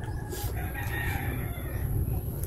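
A rooster crowing once in the background: one long call starting about half a second in and lasting just over a second.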